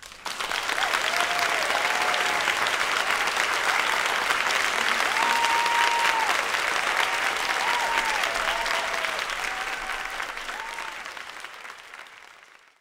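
Audience applauding at the end of a talk. A few held cheers and whoops ring out over the clapping. The applause swells quickly at the start and fades out near the end.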